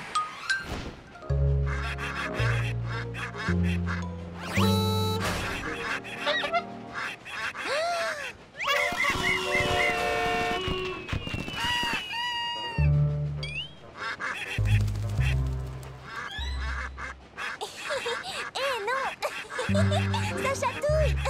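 Ducks quacking over cartoon background music that has a bass line moving in steps.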